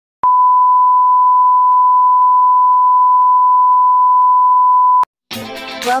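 A loud, steady electronic beep at a single pure pitch, held for about five seconds and ending in a click. Intro music starts near the end.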